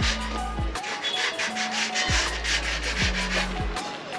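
A paintbrush scrubbing paint onto a steel pole in short repeated strokes, over background music with a deep bass beat.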